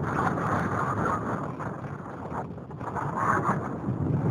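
Wind and airflow buffeting the onboard camera microphone of a radio-controlled glider flying in strong wind: a rough, gusting noise that dips about halfway through and swells again near the end.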